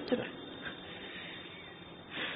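A pause between a man's spoken phrases, holding only a faint, steady background hiss of the recording.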